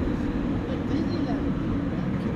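Road traffic on a busy multi-lane street: vehicles, including a heavy truck, driving past as a steady low rumble.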